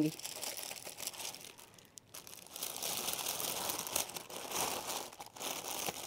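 Thin clear plastic bag crinkling and rustling softly as hands wrap it over a plate, with a short lull about two seconds in.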